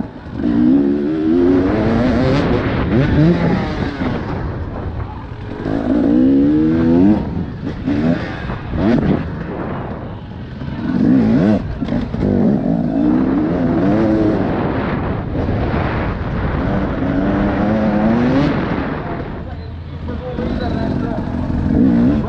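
Enduro dirt bike's engine heard from the rider's helmet, revving hard and falling off over and over as it is ridden through a muddy race track, the pitch sweeping up and down repeatedly.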